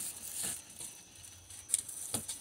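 Faint handling noises: soft rustling, with a short sharp click near the end.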